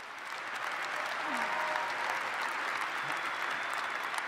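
Large auditorium audience applauding, the clapping swelling over the first second and then holding steady.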